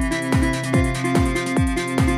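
Instrumental passage of an electronic dance track: a Roland TR-909 kick drum with a falling pitch on every beat, about 140 beats a minute, under a steady synth line that steps between two notes.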